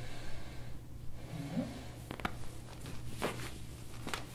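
Quiet treatment room: the patient breathes softly near the start, then a few faint sharp clicks come in the second half, two of them about a second apart, as the chiropractor's hands press on her low back and hip.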